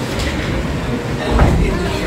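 Classroom background: indistinct voices over a steady low rumble of room noise, swelling briefly about one and a half seconds in.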